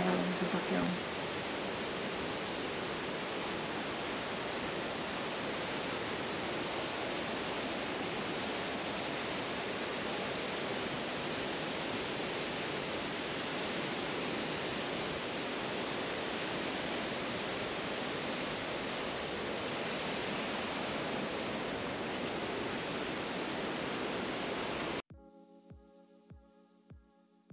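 A river in full flood and a nearby waterfall: a loud, steady rush of water that cuts off suddenly near the end.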